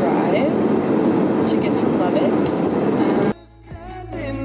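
Steady road and engine noise inside a moving car's cabin, with a faint voice under it; it cuts off suddenly near the end, and quiet music begins.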